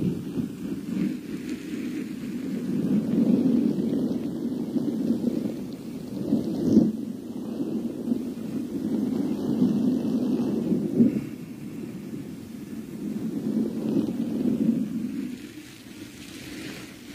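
Low rumbling rustle of something being handled and rubbed right against a microphone, swelling and fading in waves with a couple of sharper knocks.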